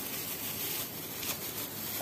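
Faint rustling and crinkling of disposable plastic gloves and a plastic piping bag being handled, with a couple of brief scratchy rustles.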